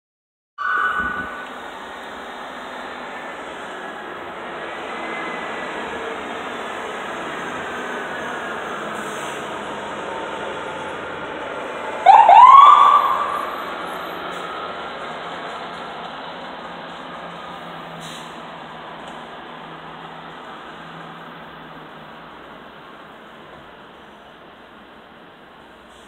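Emergency vehicle siren sounding over steady street noise: a short loud blast just after the start and a loud rising whoop about halfway, then the sound slowly fades.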